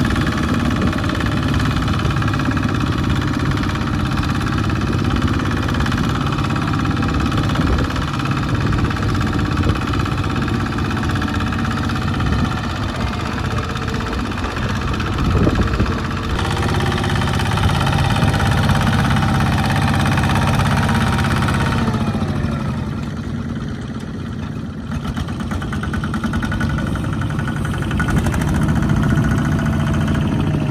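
Kubota two-wheel walking tractor's single-cylinder diesel engine chugging steadily while it hauls a loaded rice trailer through mud. Its revs fall for a few seconds about two-thirds of the way through, then pick up again.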